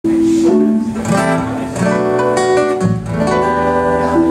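Live band playing an instrumental opening, with strummed acoustic guitar to the fore and electric bass underneath.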